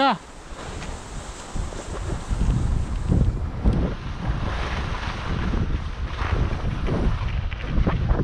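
Wind rushing over the microphone of a camera worn by a skier moving downhill, with the skis hissing and scraping over groomed snow; the rush grows louder about two seconds in as speed builds.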